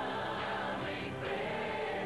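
Music: a choir singing a campaign song.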